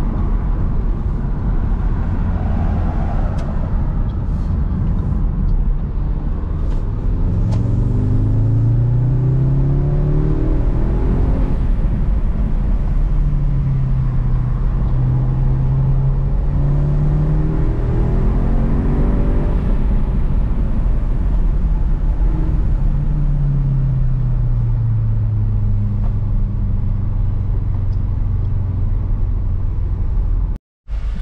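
Audi S3's turbocharged four-cylinder engine and road noise heard inside the cabin while driving, the engine note rising and falling a few times as the car speeds up and slows down.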